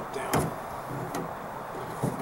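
Sharp plastic-and-metal clicks from a replacement tailgate handle's latch rod and retaining clip being fitted by hand: a loud click about a third of a second in and a softer one a little after a second.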